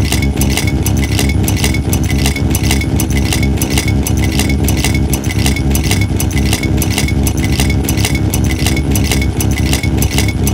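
Experimental electronic music from modular and analog synthesizers: a loud, steady low drone with a fast, even pulse of clicks over it.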